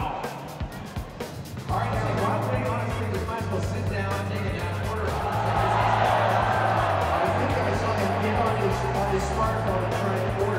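Music with a bass line of held low notes changing every second or so. It is softer for the first second or so and comes back in at full level about two seconds in, with voices in the mix.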